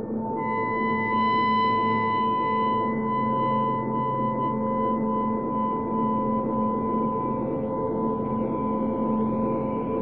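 Ambient film-score music: sustained, layered drone tones with no beat, like a singing bowl. A brighter layer of high held notes enters about half a second in, and faint sliding high tones appear near the end.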